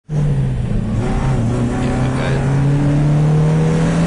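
Car engine heard from inside the cockpit, running hard on track. Its pitch dips briefly about a second in, then climbs slowly and steadily as the car accelerates.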